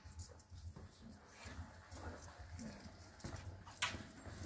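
Quiet hangar room tone with a steady low hum and a few faint clicks from hands working the missile and its wing-pylon fittings, then one sharp click near the end.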